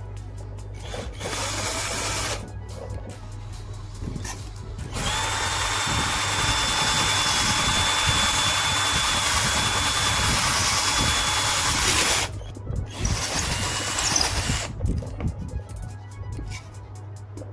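Power drill boring a hole through a plywood board: a short burst about a second in, then a long steady run of about seven seconds with a steady motor whine, and another short burst near the end.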